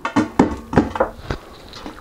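A metal spoon scraping and knocking inside a tub of crystallised honey as the thick honey is dug out, a handful of short clicks and knocks over the first second and a half.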